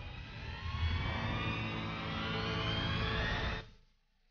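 Jet aircraft flying over: a steady rush of engine noise with slowly rising tones over a low rumble, cut off abruptly near the end.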